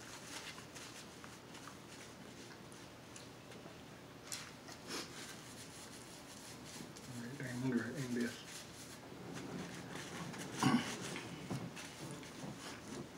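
Close-up eating sounds: crab leg shells being cracked and picked apart by hand, with chewing and mouth noises as scattered clicks and crackles. There is a brief murmur of voice about seven seconds in and a sharp crack near the end.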